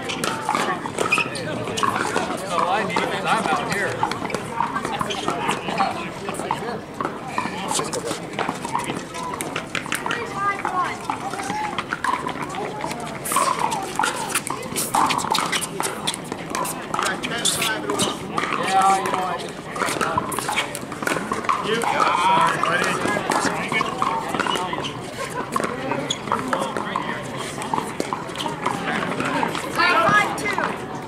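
Pickleball paddles striking the hard plastic ball, sharp pops that come thickest about halfway through as a rally is played, over the talk and calls of players across the courts.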